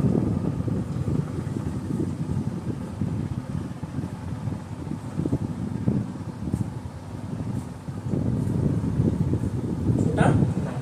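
Low, uneven rumble of moving air on the microphone, with a few faint strokes of a marker writing on a whiteboard.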